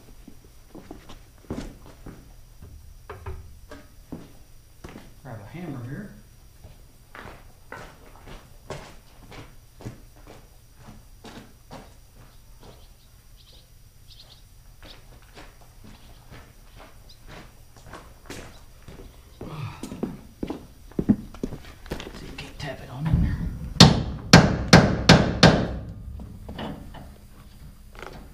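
Under-truck work on a rear leaf spring: scattered footsteps and clinks of tools, then near the end a quick run of about six loud, ringing metal blows, the loudest sound, as the new leaf spring is knocked into place.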